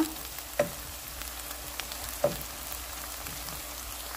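Chopped onions sizzling in oil in a non-stick frying pan, a steady crackling hiss as a wooden spatula stirs them. Two brief louder sounds cut in, about half a second and two and a quarter seconds in.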